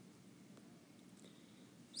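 Near silence: faint steady background noise.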